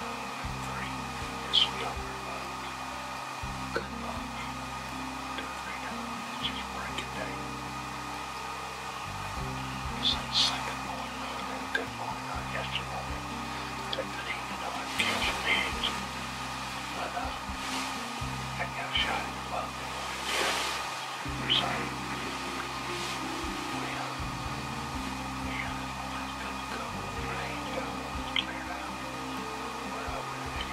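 Quiet background music with held low notes that change every second or two.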